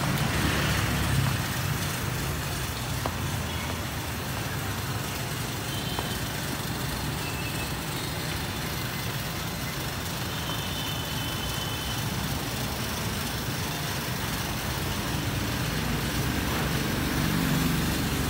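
Motorbike engine running steadily with a low rumble, growing louder near the end.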